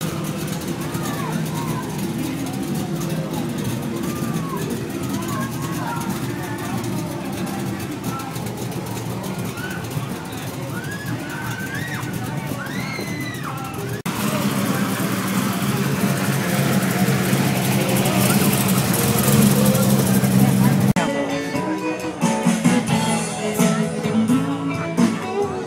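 A car engine idling with a steady low rumble under crowd chatter. The sound changes abruptly at edits, and music with guitar takes over near the end.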